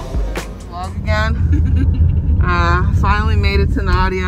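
Background music trails off in the first second. A steady low rumble of a car on the move, heard from inside the cabin, then takes over under voices.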